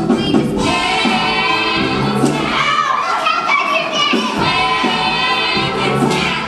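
Live musical-theatre number: several women's voices singing together over instrumental accompaniment, recorded from a stage performance.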